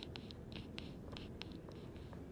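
Faint, irregular scratchy rustling with small ticks, from paper being handled at a table: hands moving over the pages of a book.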